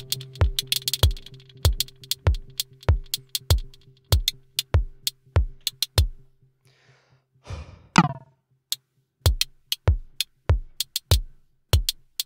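Elektron Model:Cycles groovebox playing an electronic drum pattern: a kick about twice a second with ticking hi-hats, over a held low synth tone that fades away. The beat drops out for about a second, then a rising noise swell leads into a hit about eight seconds in, and the kicks carry on.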